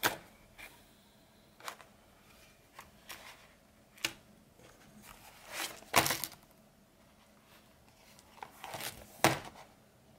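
Hand-stitching and handling of leather: waxed thread drawn through punched holes in short rasping pulls, mixed with taps and rustles of the leather pieces. The two loudest pulls come about six and nine seconds in.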